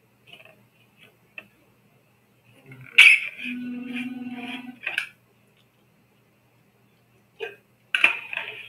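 A short non-speech vocal noise from a man: a sudden, loud start about three seconds in, then a steady voiced tone for about a second and a half, ending with a click. Faint ticks come before it.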